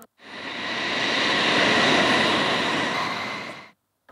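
Jet engines of F-15-type fighter jets taxiing: a steady roar with a thin high whine on top, fading in and out.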